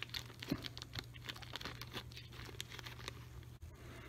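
Small plastic hardware bag crinkling as it is handled, with light irregular clicks from the metal parts inside, over a low steady hum.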